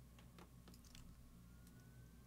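Near silence: faint room hum with a few faint computer mouse clicks in the first second.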